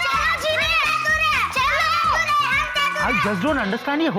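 Young girls' high-pitched voices in playful chatter over background music with a steady beat.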